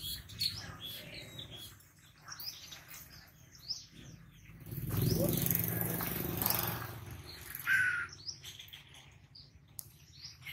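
Small birds chirping, short high calls scattered throughout. About five seconds in, a broad rushing noise swells for a couple of seconds and then fades.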